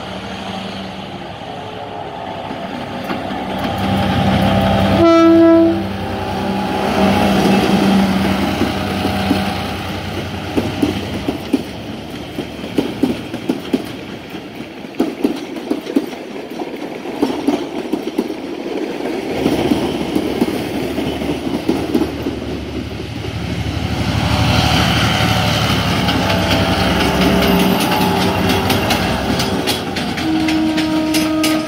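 General Motors G22CU diesel locomotive hauling passenger coaches passing close by. A short, loud horn blast sounds about five seconds in, followed by the locomotive's engine. The coaches then roll past with a long run of regular wheel clicks over the rail joints, and a locomotive's engine comes by again near the end.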